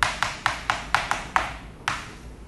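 Chalk tapping and scraping on a blackboard as figures are written: a quick run of sharp taps, about four a second, then a short pause and one more tap near the end.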